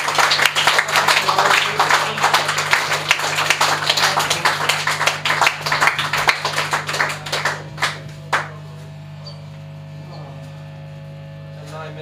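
Small-room audience clapping and cheering after a song, dying away about eight seconds in. Steady amplifier hum from the band's gear remains.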